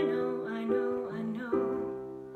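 A woman singing a slow pop ballad over accompaniment, with a new chord struck three times, each ringing and fading before the next.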